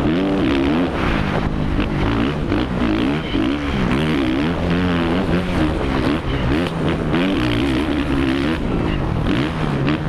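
Onboard sound of a Suzuki RM-Z450 four-stroke motocross engine racing on a dirt track, its revs rising and falling constantly through gears and corners, with wind rushing over the camera.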